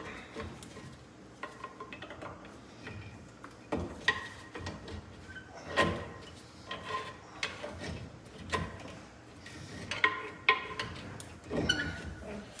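Irregular metallic clinks and knocks, several with a short ringing tone, as hand tools and metal brake parts are worked behind the bus's front wheel. The part is seized on a rusted pivot bolt and won't budge.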